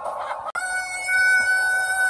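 A person's loud, long, high whoop starting abruptly about half a second in and held at one steady pitch, after a brief jumble of noise.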